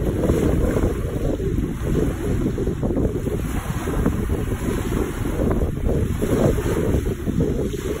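Wind buffeting the microphone in a steady, gusty rumble, with small waves breaking on a pebbly shore underneath.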